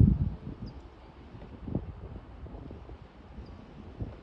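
Wind buffeting the microphone in uneven low gusts over faint outdoor ambience, loudest right at the start.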